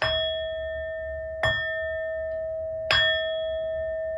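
A bell struck three times, about a second and a half apart, at the same pitch each time. Each strike rings on steadily into the next, as an opening blessing for a tarot reading.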